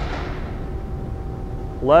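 Steady low background rumble with a faint, steady hum.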